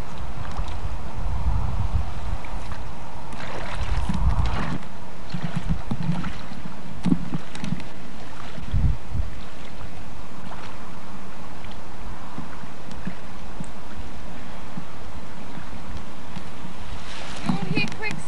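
Wind buffeting the camcorder microphone, with low rumbles during the first few seconds, over a steady hiss of outdoor shoreline noise; faint voices come through now and then.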